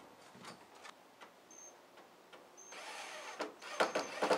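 Cordless drill running, boring into a wooden 1x4 board, starting a little under three seconds in and getting louder near the end. Before it there are only a few faint handling clicks.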